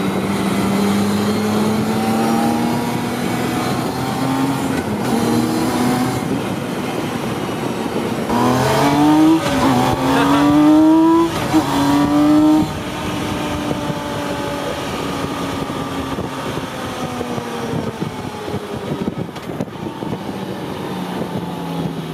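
Campagna T-Rex three-wheeler's engine heard from its open cockpit: pulling with rising pitch, then revving hard through two quick upshifts between about nine and twelve seconds in, the loudest part, before settling to a steady cruise. A steady rush of road and wind noise runs underneath.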